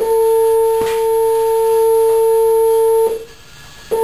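A steady 449 Hz sine tone played through a two-inch speaker into a propane-filled Rubens tube, driving a standing wave in the pipe, with a fainter overtone an octave up. It cuts out about three seconds in and comes back just before the end.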